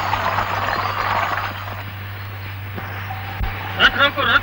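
Rattling rolling noise of a horse-drawn cart's wheels and hooves on a dirt track, which stops about a second and a half in and leaves a steady low hum. Just before the end a loud, high, wavering cry begins.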